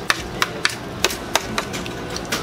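Hands scraping cake off a thin metal tray. About six sharp, irregular knocks and clicks as fingers strike and drag across the metal.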